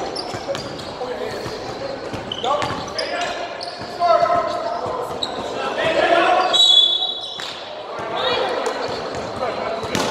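Players' voices calling and shouting in a large, echoing gym, with a basketball bouncing on the hardwood floor.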